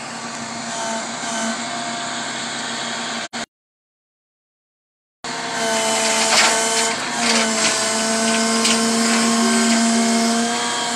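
A motor runs with a steady hum and several whining tones. The sound drops out completely for about two seconds a little past a third of the way in, then comes back louder, with a few clicks.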